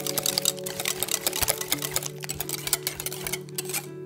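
Wire balloon whisk beating a thin egg-and-milk batter in a glass bowl, its wires ticking rapidly against the glass. The whisking stops a little before the end.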